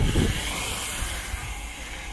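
Steady outdoor background hiss, with a brief low thump at the start.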